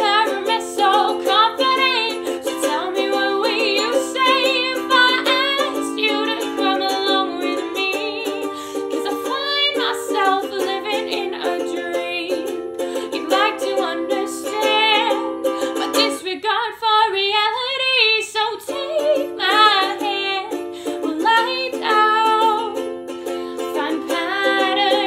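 A woman singing a slow acoustic song, accompanied by a strummed ukulele, her voice wavering with vibrato. About two-thirds of the way through, the ukulele stops for a couple of seconds and the voice carries on alone.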